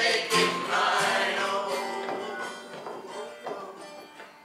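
A folk group singing with acoustic guitar accompaniment, ending on a held final chord that fades away over the last two seconds.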